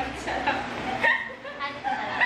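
Young women laughing together, in short broken bursts, with some talking mixed in.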